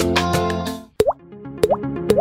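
Background music: one track fades out just under a second in, and a new electronic track starts with a sharp click and short rising 'bloop' sounds repeating about twice a second.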